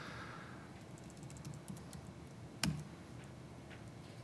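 Faint laptop keyboard typing: a quick run of light key clicks, then one sharper key press about two and a half seconds in.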